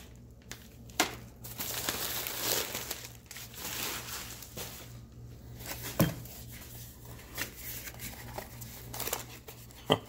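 Plastic packaging bag and paper crinkling as a parts package is unwrapped by hand, with a few sharp knocks of items and a small cardboard box handled on the bench. A faint steady low hum runs underneath.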